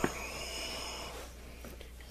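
A towel rubbing a wet plastic match case dry: a soft scrubbing hiss that starts with a small click and dies away over about a second and a half.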